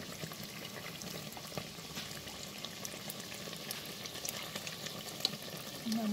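Belyashi deep-frying in hot oil: a steady sizzle with scattered small crackles.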